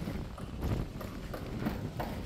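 Footsteps on loose gravel and stone rubble, about three steps a second, with wind rumbling on the microphone.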